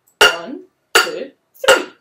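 Wooden spoons striking metal kitchen pots and pans used as a drum kit: three even strikes about 0.7 s apart, each ringing briefly, a spoken count on each beat.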